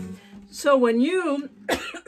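The last acoustic guitar chord dies away, a short sound in a woman's voice follows, and she coughs sharply near the end.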